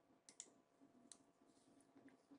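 Near silence: room tone with a few faint, short clicks in the first second or so.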